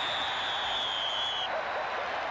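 Stadium crowd noise with a referee's whistle: one long high blast, falling slightly in pitch, that stops about one and a half seconds in.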